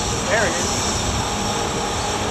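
Outboard motor running steadily with the boat under way, mixed with wind and the rush of the wake.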